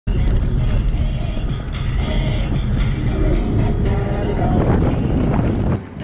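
Steady engine and road rumble inside a moving car's cabin, with music playing under it. The rumble drops away just before the end.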